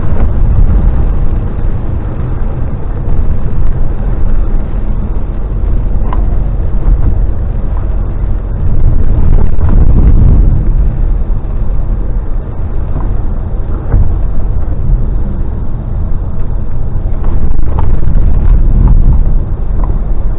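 Steady low rumble of a DAF XF lorry under way, engine and tyre noise heard from inside the cab on a rough road surface.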